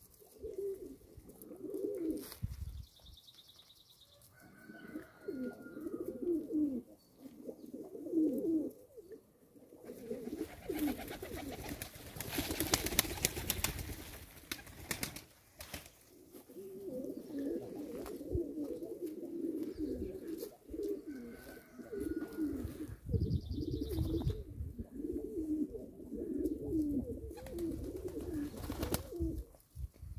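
Several domestic pigeons cooing, with rolling coos repeating through most of the stretch and a short pause a few seconds in. Midway, a few seconds of loud, hissing noise rise over the cooing.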